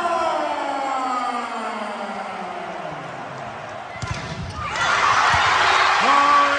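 A public-address announcer's long, drawn-out shouted call: one held voice, sliding slowly down in pitch for about four seconds. About four seconds in it gives way to a few low thumps and a burst of crowd cheering.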